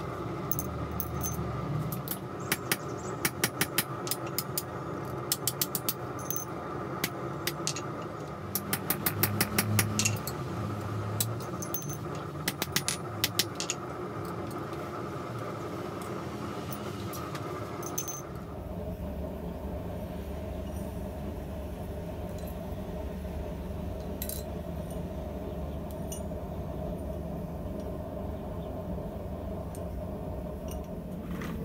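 Hand hammer striking hot steel on an anvil block in runs of quick, sharp blows over the first dozen or so seconds, over a steady workshop hum. After the blows stop, only the hum remains, and its tone changes abruptly about 18 seconds in.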